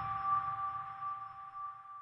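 Tail of an electronic intro jingle: a held two-note synth tone fading away, then cutting off at the end.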